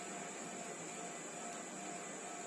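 Steady background hiss from the recording, with a faint constant high-pitched whine and a low hum; no distinct event stands out.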